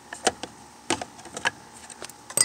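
Long metal forceps clicking and knocking against the plastic fuel tank while they work a fuel line through its filler neck: four or five sharp separate clicks.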